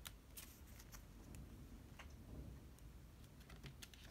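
Faint scattered clicks and light taps of tarot cards being handled as a card is drawn from the deck and laid on the table.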